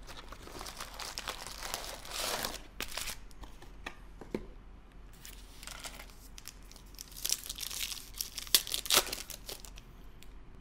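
Foil trading-card packets rustling and crinkling as they are handled out of a cardboard box, then a packet being torn open, with the loudest crinkling and a few sharp snaps near the end.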